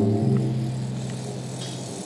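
Live acoustic ensemble playing slow instrumental music: a held chord changes about a quarter second in, then rings on and slowly fades.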